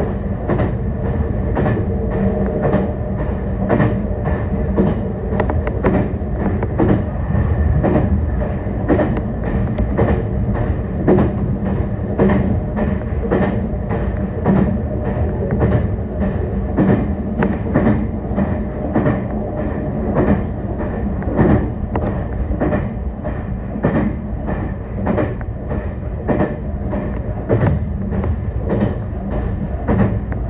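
Meitetsu electric train running along single track, heard from inside the leading car: a steady low rumble and hum, with frequent clicks of the wheels over the rail joints.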